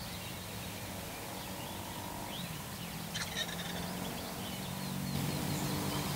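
Eastern wild turkey gobbler gobbling once, a short rattling call about halfway through. Songbirds chirp in the background, and a low steady hum builds toward the end.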